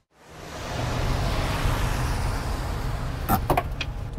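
An SUV's engine and tyres running, a steady noise that fades in over the first second, with a few sharp clicks near the end.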